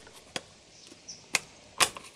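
Clear acrylic panels clicking against each other as their tabs are pushed into the slots of the mating panels: a few short, sharp plastic clicks, the loudest near the end.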